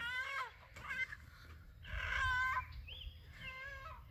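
Chickens squawking: about five separate drawn-out calls. The loudest, a steady one, comes about two seconds in, and a short rising-and-falling call follows near the three-second mark.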